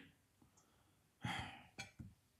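A man sighs: one breathy exhale of about half a second that fades away, followed by a short click.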